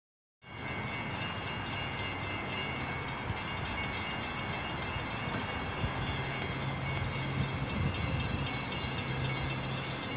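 Steady low rumble with a constant hum, from a diesel train still some way off down the line.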